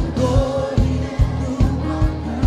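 Church choir singing a gospel song together over an amplified accompaniment with a steady beat of about two and a half thumps a second.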